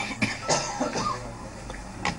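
A man coughing: a few short, rough bursts in the first second, then a lull.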